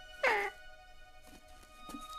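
A cartoon baby macaw gives one short, meow-like squawk that falls in pitch, about a quarter second in. Soft background music with held notes plays under it.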